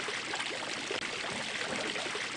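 Water fountain splashing: a steady, unbroken rush of falling water, really loud.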